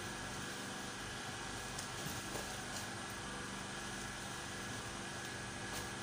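Steady mechanical hum with a faint higher whine, and a few faint light clicks.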